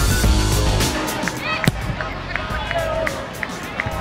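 Background music with a steady beat that stops about a second in, giving way to live sound from a football pitch: players' voices calling out, and a single sharp knock about a second and a half in.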